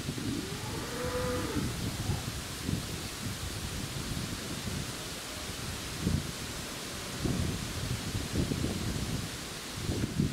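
A Holstein-Friesian dairy cow moos once, about a second in, in a single call that rises and then falls in pitch. Wind buffets the microphone throughout in gusty low rumbles.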